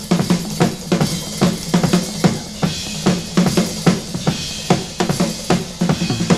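Rock drum kit played hard in a drum-led passage: a run of bass drum and snare strokes over a held low note, with cymbals washing in about halfway through.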